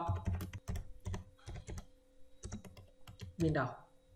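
Typing on a computer keyboard: a quick, irregular run of keystrokes as a search phrase is typed, over a faint steady hum.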